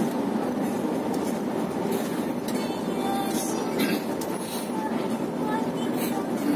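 Steady engine and road noise inside the cabin of a moving coach bus, with a few brief high-pitched rattles about halfway through.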